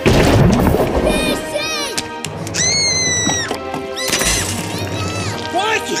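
Animated film soundtrack: a loud crash right at the start, then dramatic music with high, wavering cries and voices over it.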